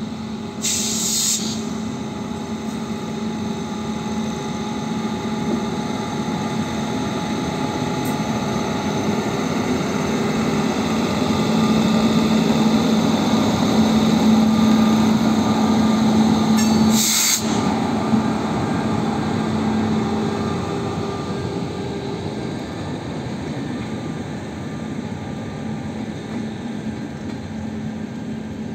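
WAP-5 electric locomotive hauling a rake of LHB coaches past on departure: a steady low hum from the locomotive over wheel and track noise, growing loudest as the locomotive goes by midway, then the coaches rolling past.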